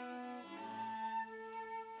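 A small chamber ensemble of flute and bowed strings playing softly in long held notes, the pitch moving to new notes about half a second in and again past the middle.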